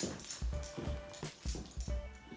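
A small dog walking on a hardwood floor: irregular light clicks and knocks, about six, from its claws and steps.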